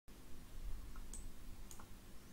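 A few faint, sharp clicks, about a second in and again near the end, over a low background hum.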